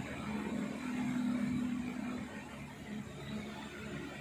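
Steady low background hum with no distinct event.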